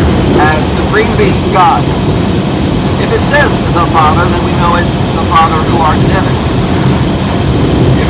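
Steady low rumble of road and engine noise inside a car's cabin, with a man talking over it.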